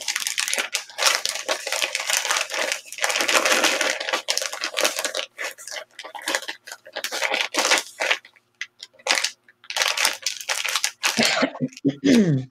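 Clear plastic bags crinkling and rustling in quick, irregular bursts as they are handled and stacked with folded fabric inside.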